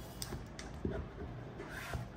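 A plastic squeegee card rubbing over a film on the back of a phone as it is smoothed down, quiet, with a few light ticks and taps and a brief scrape near the end.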